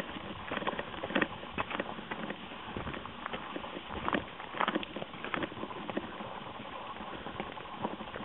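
Footsteps and cows' hooves crunching and clicking irregularly on a stony gravel track as a herd of cattle walks along it.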